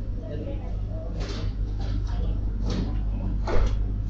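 Indistinct chatter of several shop customers picked up by a security camera's microphone, over a steady low hum.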